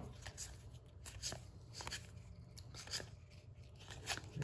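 Cardboard trading cards being flipped through by hand: faint, irregular ticks and rustles as each card slides off the stack.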